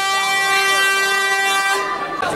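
A handheld air horn sounding one long, steady, loud blast that cuts off near the end.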